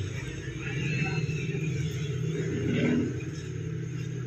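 A steady low mechanical hum, with a brief louder swell about three seconds in.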